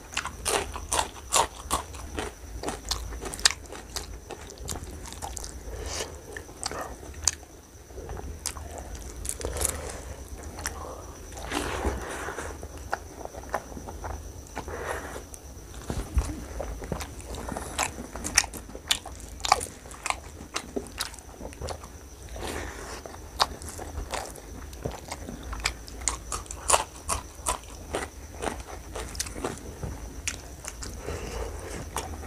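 Close-up eating sounds of mutton curry and rice eaten by hand: wet chewing with many sharp, crisp crunches and smacks, and a raw green chilli bitten near the start.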